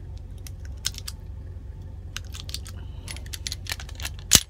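Handgun magazine being handled and loaded with .380 ACP cartridges for a Ruger LCP II: a run of small, irregular metallic clicks that come faster in the second half.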